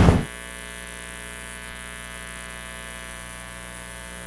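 Steady electrical mains hum with many even overtones, unchanging in pitch and level, left on the audio line once the announcer's voice stops just after the start.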